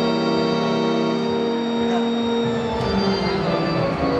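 Electronic keyboard playing sustained chords: one chord held for nearly three seconds, then a change to new notes.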